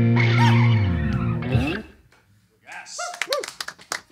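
A rock band's final chord, electric guitar and bass held and ringing, then stopping about two seconds in. After a short pause come brief bits of voice and a few sharp clicks.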